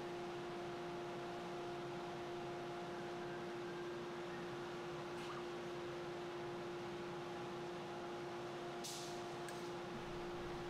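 Steady machine hum with one constant mid-pitched tone from a CNC router's motors and drives while the Z axis lowers the bit onto its touch plate. A brief faint rustle comes near the end.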